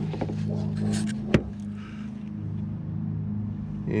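A steady low engine hum of an idling vehicle, with light clicks of the fog lamp and its wiring being handled and one sharp click about a second and a half in.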